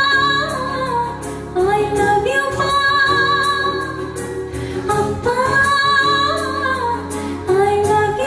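A woman singing a slow melody into a microphone, holding long notes in phrases of a second or two, over instrumental accompaniment.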